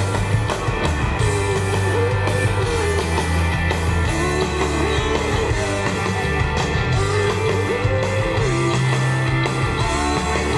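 Live rock band playing an instrumental passage between sung lines: electric guitars, bass guitar and drum kit, with a lead line that bends up and down over steady bass notes.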